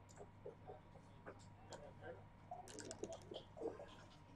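Faint clicks of backgammon checkers being picked up and set down, with a denser rattle of dice about three quarters of the way in, over a low murmur of voices.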